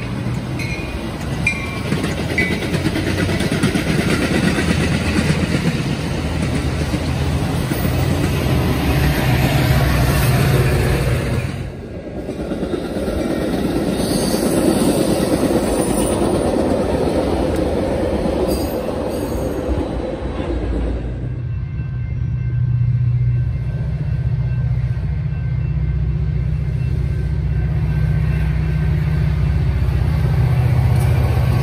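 Metra bilevel commuter coaches rolling past with a steady rumble of wheels on rail, in two passes broken by a short drop about twelve seconds in. From about twenty-one seconds in, a diesel locomotive's engine runs with a steady low hum as it approaches.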